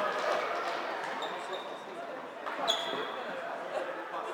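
Floorball game in a sports hall: voices and chatter fading over the first second, then a faint short high-pitched tone about a second in and a sharper click with a louder high tone about two and a half seconds in.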